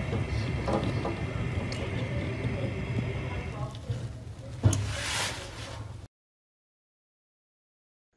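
Natural gas fireplace running with a steady rush of gas and flame, fading out after about three and a half seconds as the wall gas valve is turned off. A sharp knock near five seconds is followed by a brief hiss.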